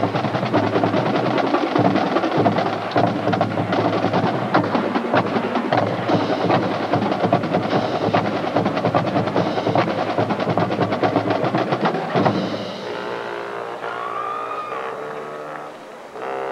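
Marching band playing: snare, tenor and bass drums in fast, dense patterns under brass chords. About twelve seconds in, the drumming stops and the sound drops to quieter held brass chords.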